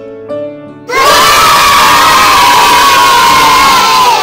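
A crowd of children cheering and shouting bursts in loudly about a second in and carries on, many voices at once. Before it, soft plucked-string background music plays.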